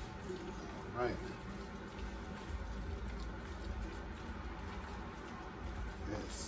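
Wooden spoon stirring a thick, cheesy rice casserole in an aluminium foil pan, faint and steady, over a low hum.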